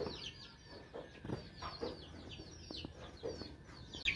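Domestic chickens: a faint, rapid series of short, high peeps falling in pitch, typical of young chicks, with a few lower clucks among them.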